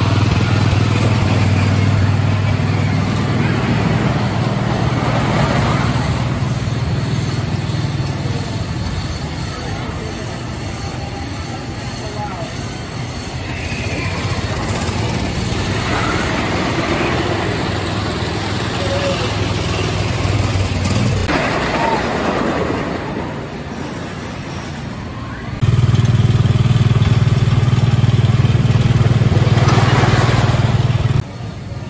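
Wooden roller coaster train running over its track, a loud low rumble that carries on with shifts in level, with riders' voices over it. It jumps to a louder, steadier low rumble near the end.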